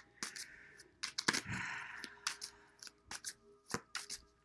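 A deck of tarot cards being handled and shuffled by hand, with a run of sharp card clicks and a brief rustle of cards sliding together.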